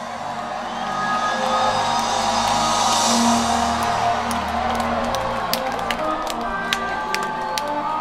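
Live concert sound fading in over the first second or so: music from the stage under a crowd cheering, with scattered sharp claps or clicks in the second half.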